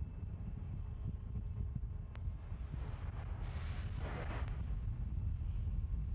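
Wind rumbling steadily on an outdoor launch-pad microphone, with a brief rush of hiss rising and fading about three and a half seconds in and a faint click near two seconds.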